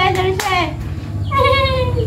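Hands clapping a few quick times, with a high sing-song voice over them. This is followed about one and a half seconds in by one long voiced call that falls in pitch.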